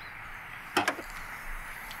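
Station wagon's rear hatch being lifted open on new gas struts, with a short clunk just before a second in.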